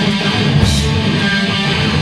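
Live hardcore punk band: distorted electric guitar strummed with the lowest end of the bass and drums thinned out, until the full band comes back in at the very end.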